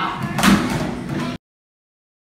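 Classroom noise with a loud bang, like a slam, about half a second in; the sound then cuts off suddenly into dead silence.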